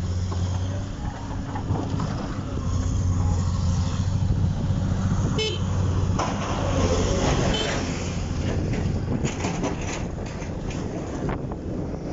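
Vehicle engine running steadily as it drives over a rough, muddy road, with a short high-pitched beep about five seconds in and a few knocks and rattles later on.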